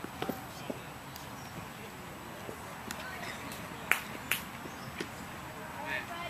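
Distant voices over open-air background noise, with a few sharp clicks; the loudest two come close together about four seconds in.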